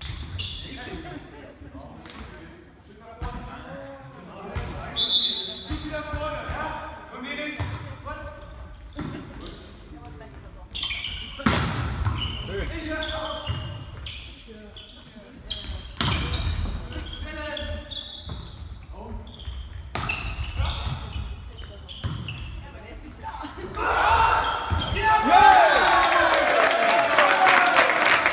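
Volleyball being struck during a rally in an echoing sports hall, with sharp hits every few seconds among players' calls; near the end players shout and cheer and spectators clap as the rally ends.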